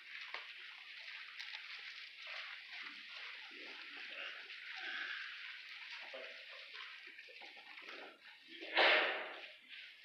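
Thin paper pages rustling as a Bible is leafed through to find a passage, with one louder page sweep about nine seconds in.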